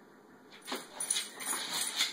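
Boston terrier mix whining in excitement at a laser dot, starting a little under a second in and growing louder toward the end.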